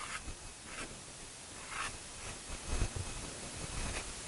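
Soft pastel stick scraping across paper in three short, faint strokes, with a soft low bump about three seconds in.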